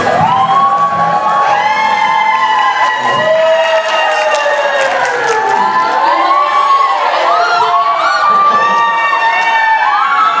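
A banquet-hall audience cheering, shouting and clapping, many voices at once, as a guitar-and-ukulele song stops right at the start.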